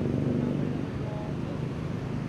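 A motorcycle engine idling close by over road traffic; the engine sound fades during the first second, leaving a steady traffic rumble.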